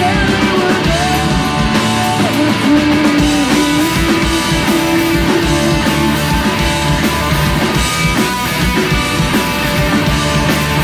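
Live punk rock band playing a song: electric guitars held over a steady drum kit beat, loud throughout.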